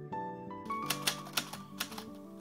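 Soft background music, joined under a second in by a typewriter sound effect: several sharp key-strike clicks at uneven intervals over the music.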